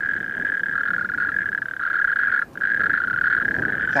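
A chorus of male natterjack toads calling together: a loud, continuous rattling churr from several overlapping calls, which drops out for a moment just past halfway and then comes straight back.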